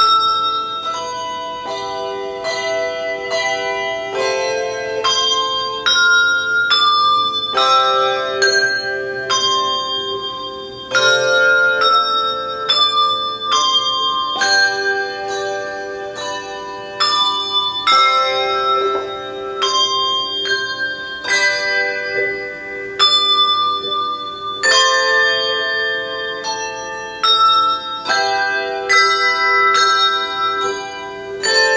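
Bell music: a slow melody of struck, pitched bell tones, each note ringing on under the next.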